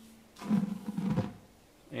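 Flour poured from a plastic bowl into a stainless-steel mixing bowl: a soft rushing pour lasting about a second, starting a little under half a second in.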